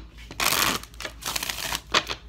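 A deck of cards being shuffled by hand: two rustling bursts about half a second each, the second about a second in, with a sharp click near the end.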